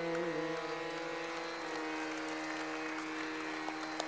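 The last sung note of a Hindustani classical vocal performance ends just after the start. The steady drone of the accompaniment then rings on, a few held pitches without any rhythm.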